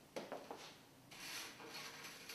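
Hair rustling under fingers as a braid is tucked into a bun: a few short, faint rustles, then a longer soft rubbing.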